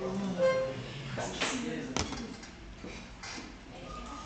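Murmur of voices in a room, with a brief held musical note about half a second in and a sharp click about two seconds in.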